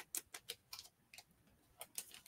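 Faint, irregular light clicks and taps from paper and packaging being handled, several in the first second, then sparser.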